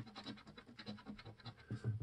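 A coin scratching the coating off a scratch-off lottery ticket in rapid, short, faint strokes.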